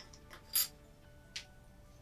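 Faint background music, with two brief scuffs of card board as a cut mount board is lifted and handled, the first about half a second in and a lighter one near a second and a half.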